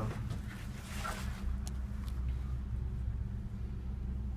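Steady low hum and rumble inside a moving gondola cabin as it rides along the haul rope, with a faint click a little over a second and a half in.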